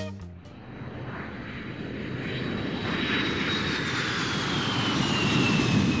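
Jet airplane passing: engine noise that swells steadily, with a thin high whine that slowly falls in pitch as it goes by.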